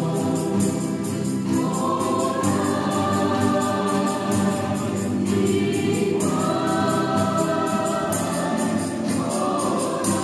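A choir singing in a stone church, holding long notes that move to a new pitch every second or two, with an acoustic guitar accompanying.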